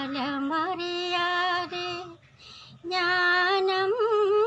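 A female voice singing a Tamil song, holding long, slightly wavering notes. There is a break of about half a second past the middle before the next phrase.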